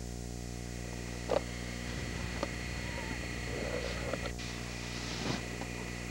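A steady low hum with a few faint, short clicks, the clearest about a second and a half in.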